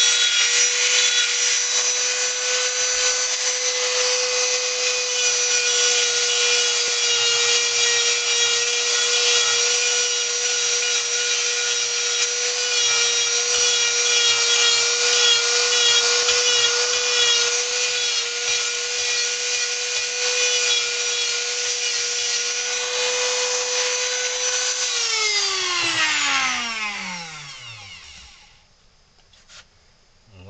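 Handheld Dremel-type rotary tool running at high speed, its bit grinding into the wood of a carving with a steady whine. Near the end it is switched off, and the whine falls in pitch as the motor spins down to a stop.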